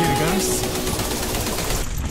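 A mountain bike rattling and clattering as it rolls down a rocky trail, a rapid run of small knocks, under background pop music whose sung line fades out about half a second in.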